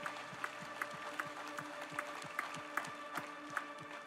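Hands clapping in a steady beat, about two and a half claps a second, over a held chord of background music.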